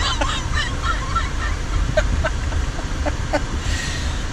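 A man laughing, mostly breathy at first and then in a string of short, quick pulses from about two seconds in, over a steady low rumble.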